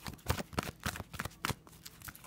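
A deck of large oracle cards being shuffled by hand, the cards slapping together in quick, irregular clicks, about seven in two seconds.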